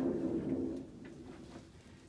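Steady low mechanical hum from construction machinery next door, which is working on a swimming pool being put in. The hum fades out about a second in.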